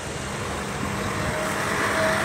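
Heavy trucks running in slow traffic: a steady engine rumble with a faint hum, growing a little louder toward the end.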